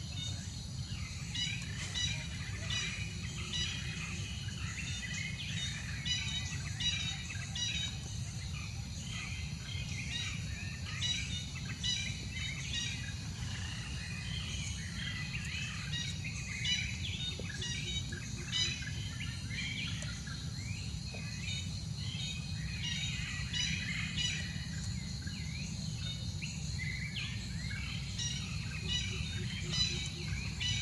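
Outdoor ambience of birds chirping: many short, quick chirps scattered throughout, over a steady low rumble and faint steady high tones.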